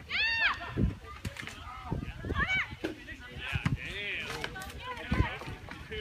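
Soccer players shouting short, high calls across the field, once right at the start and again midway, with more scattered calling after that. Scattered dull thuds come through too.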